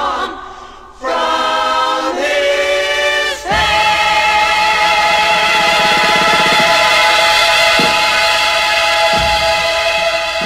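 Psychedelic rock recording with layered, choir-like voices singing sustained chords. The sound falls away briefly just after the start and comes back about a second in. From about three and a half seconds in, one full chord is held.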